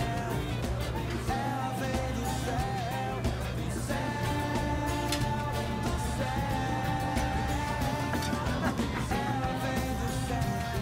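Background music: a song with a held, wavering melody line over a steady low bass.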